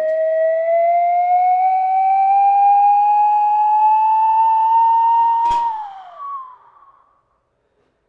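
Slide whistle playing one long note that rises slowly and steadily for about five and a half seconds, then drops away quickly, with a sharp click as it falls; a short higher note follows before it goes quiet.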